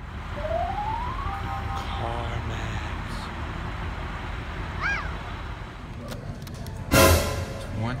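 Edited-in sound effects over a low background rumble: a tone rising for about a second, short tones, a brief chirp about five seconds in, and a loud burst near the end.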